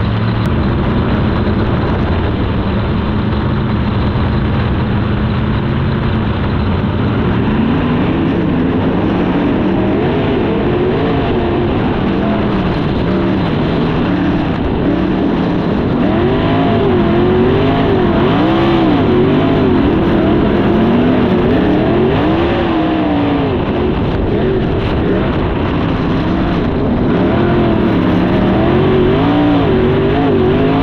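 360 sprint car V8 heard from the cockpit at racing speed on dirt. It runs at a steady pitch for the first several seconds, then rises and falls in pitch over and over as the throttle is worked.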